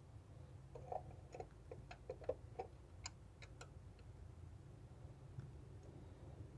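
Faint, irregular metallic clicks from a socket wrench and long extension working a spark plug into its well, about a dozen over the first few seconds, then only a faint low hum.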